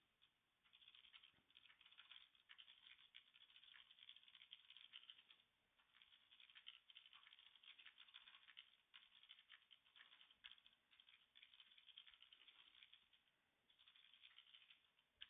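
Faint computer keyboard typing: quick runs of key clicks broken by short pauses.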